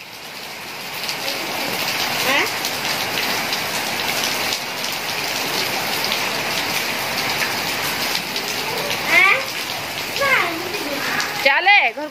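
Steady rain falling on a wet concrete yard and trees, an even hiss.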